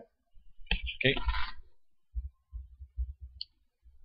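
A man's voice says "okay?", followed by a string of soft, low, muffled thuds.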